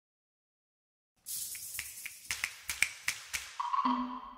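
Intro logo sound sting: silent for about a second, then a run of about eight sharp clicks over a soft hiss, ending with a ringing chime-like tone that sets in near the end.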